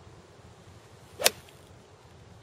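Golf iron striking a ball off the turf: one sharp crack about a second in.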